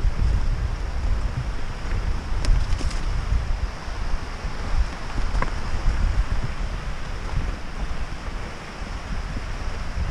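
Wind rumbling on a GoPro microphone during a fast downhill mountain-bike descent, with the Norco Aurum downhill bike's tyres rolling over dirt and roots and the bike rattling. A few sharp clicks come about two and a half to three seconds in.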